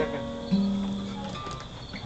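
Acoustic guitar notes ringing, with one low note held for just under a second about half a second in.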